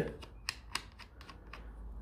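A few light, sharp clicks as the knurled lock nut on a Suzuki DR650's clutch-lever cable adjuster is turned by hand to loosen it.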